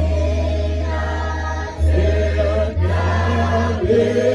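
A hymn sung by a group of voices, over a held low bass note that changes every second or so.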